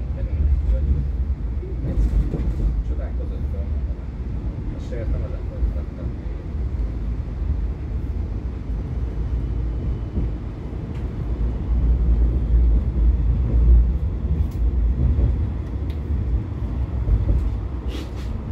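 Interior of a Siemens Combino tram in motion: a steady, loud low rumble of the running gear and wheels on rail, with passengers' voices talking faintly in the background.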